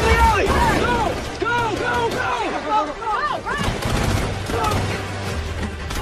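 Action-film soundtrack: gunfire and crashes mixed with a music score, loud throughout, with many short rising-and-falling whines over a low rumble.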